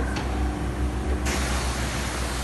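Hydraulic catalytic converter cutter driven by its pump: a steady low hum, then a little over a second in a sudden steady hiss starts up as the pump drives the blade closed on the exhaust pipe.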